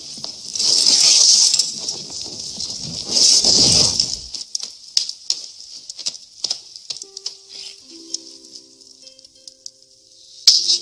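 A film soundtrack: two loud rushing noise bursts in the first half, then soft music with a few held notes from about seven seconds in, under scattered sharp clicks.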